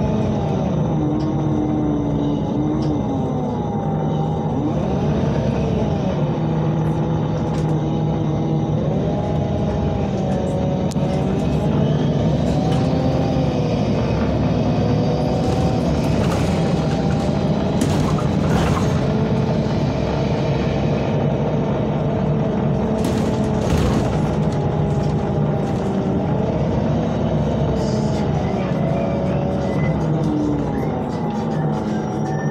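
MAN NL313 Lion's City CNG city bus heard from inside the cabin, its natural-gas engine and driveline running under way with a steady rumble. A whine rises and falls in pitch several times as the bus speeds up and slows.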